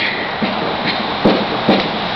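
Footsteps on gravel, about four steps roughly half a second apart, over a steady hiss.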